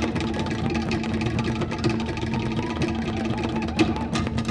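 Fast Tahitian drum music: rapid, dense strikes on wooden slit drums (toʻere) with drums beneath and a steady low note held throughout.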